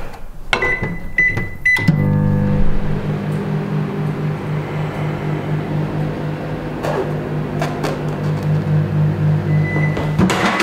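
Microwave oven being started: clicks and three short keypad beeps, then the oven running with a steady, gently pulsing low hum. A beep sounds near the end as it finishes.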